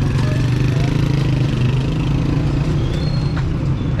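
City street traffic: a steady low engine drone from vehicles on a busy avenue.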